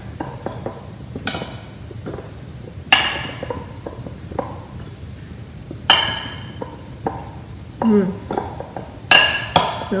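A metal spoon stirring oiled small potatoes in a glass mixing bowl: soft knocks of potatoes and spoon throughout, with about five sharp, ringing clinks of metal on glass, two of them close together near the end. It is noisy.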